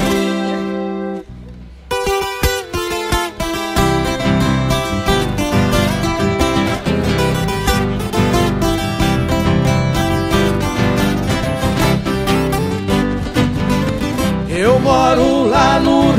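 Instrumental introduction of a Brazilian música caipira song played on a ten-string viola caipira and acoustic guitar, with an electric bass coming in about four seconds in. A man's singing voice enters near the end.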